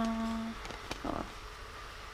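A woman's voice holding a drawn-out hesitation sound as she trails off mid-sentence, ending about half a second in. A faint click and a brief soft rustle follow about a second in, then quiet room tone.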